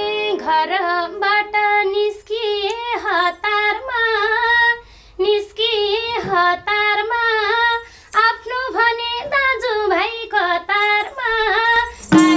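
A woman singing a Nepali folk (dohori) song unaccompanied, her voice wavering and bending through ornamented melodic turns. The phrases are broken by two brief pauses for breath.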